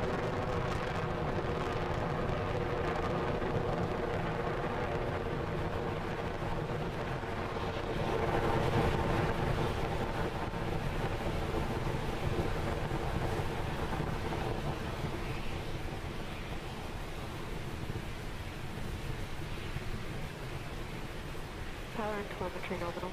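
Falcon 9 first stage's nine Merlin 1D engines during ascent: a steady low rumble that swells about eight seconds in and eases off gradually toward the end.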